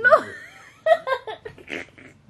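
A person laughing: a sharp outburst at the start, then a quick run of short laughing bursts about a second in, ending in a breath.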